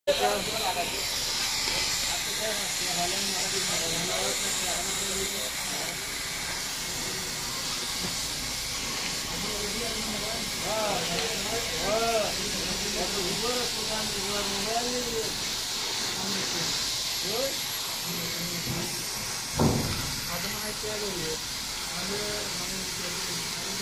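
A steady hiss with people talking in the distance, and a single thump near the end.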